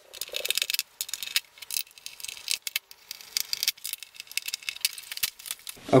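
Irregular clicking and rattling of a TV's power supply board being worked loose from the sheet-metal rear chassis, with the board coming free near the end.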